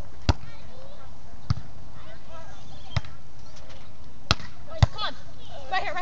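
A beach volleyball rally: five sharp smacks of hands and arms hitting the ball, the first a serve just after the start, the rest a second or so apart with two quick ones close together. Players call out near the end.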